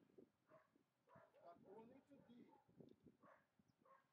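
Faint, indistinct voices of people talking quietly.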